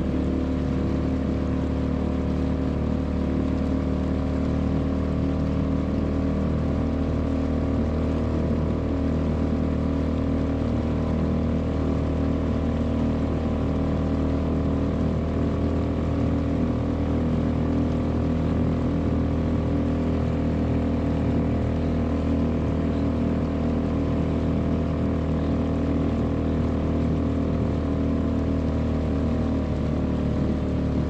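Small petrol outboard motor running at a steady, unchanging speed, pushing an inflatable boat along.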